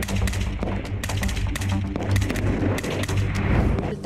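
Kalashnikov-type assault rifle firing a rapid, irregular string of shots, over a steady music bed.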